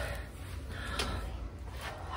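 Faint rustling and handling noise as a person moves and bends at a workbench, with one light click about a second in, over a steady low hum.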